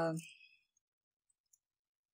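A woman's drawn-out hesitation "uh" trailing off in the first half-second, then near silence with only a couple of faint clicks.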